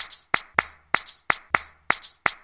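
Trailer soundtrack percussion: a quick run of short, sharp clap-like hits, about four or five a second and unevenly spaced, over a faint low bass tone.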